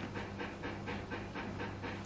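Kitchen refrigerator running with a steady low hum and a fast, faint rattle of about six or seven ticks a second; the fridge is noisy enough that its owner says it needs replacing.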